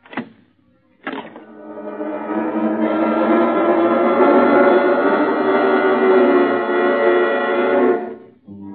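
Two sharp clunks of a mechanism snapping shut, then a dramatic music chord that swells up over about two seconds, holds loudly and breaks off.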